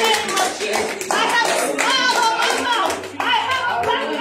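A woman singing a worship song solo into a microphone, holding long notes that bend in pitch, with hands clapping in a steady rhythm.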